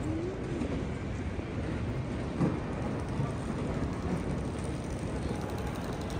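Busy airport terminal hall ambience: a steady rumbling background of building noise and the murmur of many travellers' voices and movement, with a brief louder sound about two and a half seconds in.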